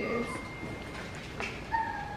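A short electronic notification ding from a laptop near the end, a single clean tone lasting under half a second. Before it there is a faint thin whine.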